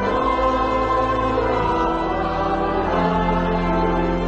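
Choir singing a hymn in long, held chords over a steady low accompaniment, the chord changing twice.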